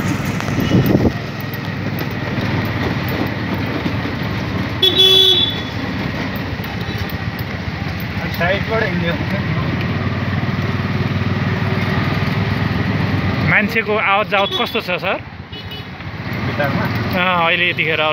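Steady running and road noise of a moving auto-rickshaw, heard from inside, with a short vehicle horn toot about five seconds in. Wavering voices or tones come in near the end.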